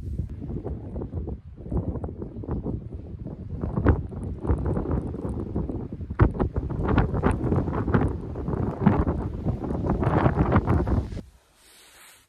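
Strong gusty wind buffeting the microphone: a low rumbling rush that surges and falls unevenly, stopping abruptly near the end.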